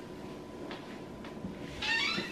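Faint rustling of a fleece coat being pulled on, then a short high-pitched cry near the end.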